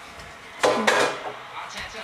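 A few short clattering knocks of small hard objects being handled, about half a second in, just after, and again near the end.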